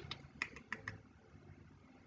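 A handful of faint computer keyboard keystrokes in the first second, then quiet.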